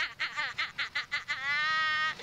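A woman laughing hard in rapid high-pitched bursts, breaking into one long held high squeal near the end.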